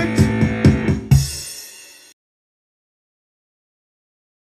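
The close of a rock song played with a drum machine and bass and guitar: a few more drum-machine hits, then a last hit about a second in that rings out and fades, cutting to dead silence about two seconds in.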